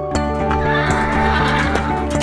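A horse whinnying once over background music.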